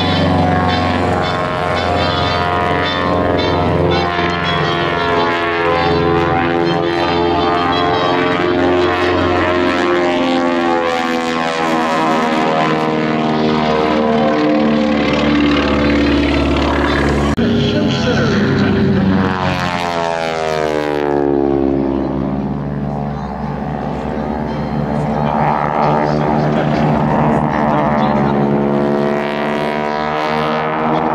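Piston engines of propeller airplanes flying aerobatics, a steady drone of many tones. About 17 s in the sound changes abruptly, and the pitch then falls as a plane passes.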